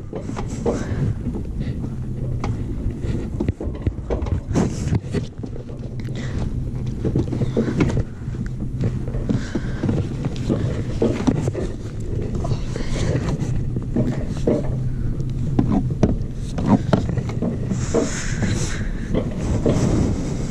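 Alpine coaster sled running along its steel rail track, its wheels rumbling with a low steady hum and frequent small rattles and clacks, with some wind on the microphone.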